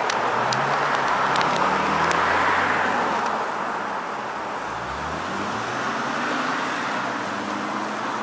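Steady road traffic noise, with a vehicle engine climbing in pitch a little after halfway. A few faint clicks come in the first couple of seconds.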